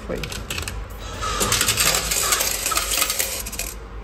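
Coin-change machine paying out smaller coins in exchange for a 2-euro coin: a few clicks, then a rapid clatter of coins falling into the metal return tray for about two and a half seconds.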